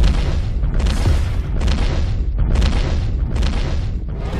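Heavy booming thuds of a giant dinosaur's footsteps, about five in a row less than a second apart, over a deep continuous rumble. This is a movie-style T-rex stomping sound effect.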